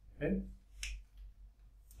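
A brief low vocal sound, then a single sharp click a little under a second in.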